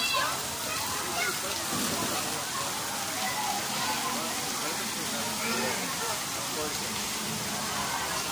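Steady rush of water splashing into a swimming pool from an artificial rock waterfall, with people's voices chattering in the background.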